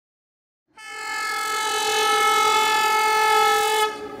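A train whistle sounding one long, steady note for about three seconds, starting about a second in after silence.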